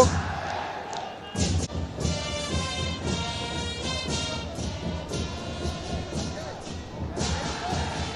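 Stadium crowd ambience with supporters beating drums in a steady run of thuds. A sustained high tone sounds over them from about two to five seconds in.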